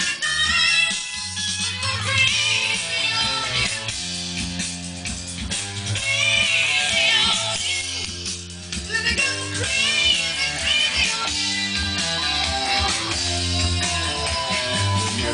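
A song with singing and guitar, played through a single Marantz Silver Image Series MS 15 three-way speaker with its midrange and tweeter level knobs turned up full.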